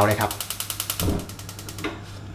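Gas stove's spark igniter clicking in rapid, even ticks as the burner is lit, stopping near the end.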